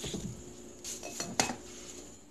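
Ingredients and a sauce bottle being set down and handled on a wooden cutting board: a handful of short knocks, the sharpest about one and a half seconds in.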